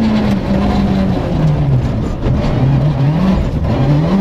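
Rally car engine heard from inside the cockpit, with its revs dropping as the car slows for a tight corner. The revs stay low with one brief pick-up, then start rising again near the end as it accelerates away, over steady road and gravel noise.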